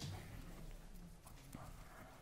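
Faint footsteps of hard-soled shoes on a stage floor, a few irregular knocks over low room hum.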